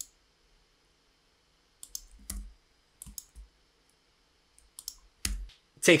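Scattered computer mouse and keyboard clicks in small clusters, a few with a soft low thud beneath them.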